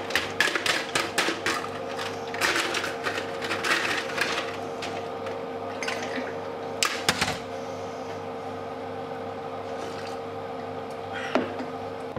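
Countertop ice maker running with a steady hum while ice cubes are scooped out of it, rattling and clattering, with a few sharp knocks.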